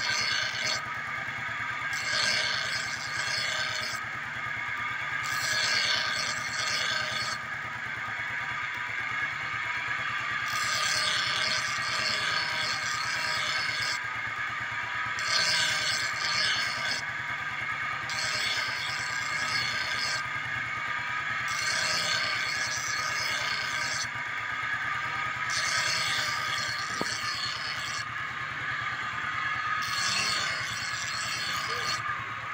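Improvised grinding wheel powered by a motorcycle, spinning with a steady whine over the running engine, as a steel blade is pressed against it in repeated sharpening strokes, each a grinding rasp of a second or two, roughly every two seconds.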